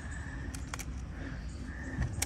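A few faint plastic clicks and taps from hands handling a Stihl AutoCut 25 string-trimmer head, over a low steady background hum.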